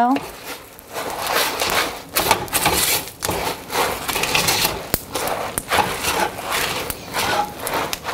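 A utensil stirring crisped rice cereal into melted marshmallow in a Cutco stainless steel wok: crunchy rustling of the cereal and scraping against the pan in repeated, irregular strokes.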